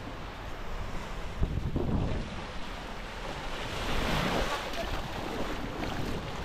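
Small waves washing onto a sandy beach, with wind buffeting the microphone. The wash swells about a second and a half in and again around four seconds in.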